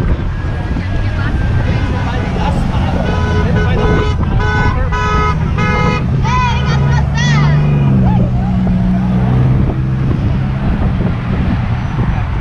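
Car horn honking in a string of short beeps, about two a second, for about three seconds in the middle, over the steady noise of passing road traffic.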